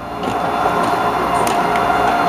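Large Tesla coil firing its arcs: a loud, steady buzz held at one pitch, with a few sharp ticks about a second and a half in.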